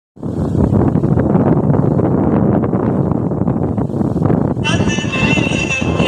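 Wind buffeting a phone's microphone: a loud, rough, fluttering rumble with no clear tone. About two-thirds of the way in it gives way to a voice with wavering, drawn-out pitches.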